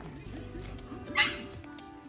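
Background music with steady held notes, and a Great Pyrenees giving a single short bark about a second in while play-wrestling.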